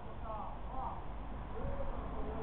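Faint voices talking, in short gliding snatches, over a steady low hum of street noise.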